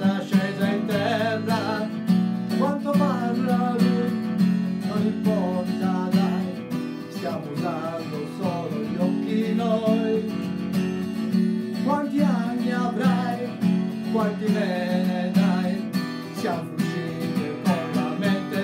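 Acoustic guitar strummed in a steady rhythm, accompanying a man singing held notes with vibrato.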